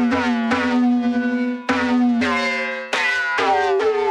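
Piano notes fed through a BeepStreet Combustor time-bending resonator effect with its feedback turned up: a string of sharply struck notes, each ringing on over a held low tone while its overtones glide downward. It no longer sounds like a piano.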